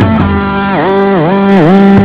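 Electric guitar in a live rock band holding one sustained note that bends down in pitch and back up three times in quick succession.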